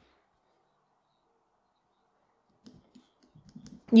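Near silence, then a few faint small clicks and taps in the last second or so as a steel buckle and a pen are handled on a leather strap.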